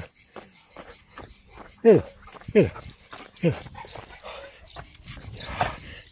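Three short vocal calls, each falling in pitch, about two, two and a half and three and a half seconds in, with crickets chirping in a steady fast pulse behind them.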